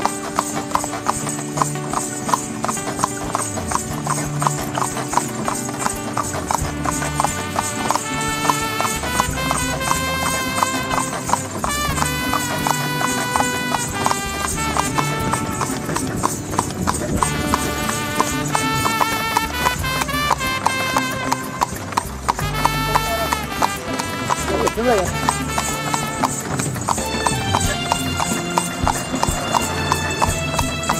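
A horse's shod hooves clip-clopping in a steady rhythm on a paved road as it pulls a tonga (horse-drawn cart), with music playing throughout.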